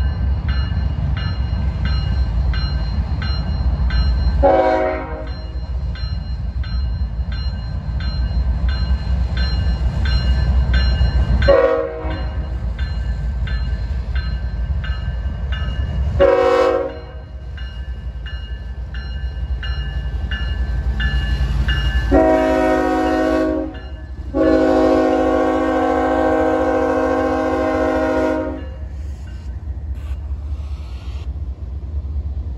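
CSX freight train, led by GE ES44AH diesel locomotives, approaching and passing with a low engine rumble, sounding its air horn in five blasts: three short ones, then a longer one and a final long one. Through the first half a bell rings about twice a second.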